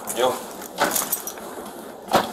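Metallic jangling and clinks from a police officer's gear as the officer moves through a yacht cabin during a search. A short snatch of voice comes near the start.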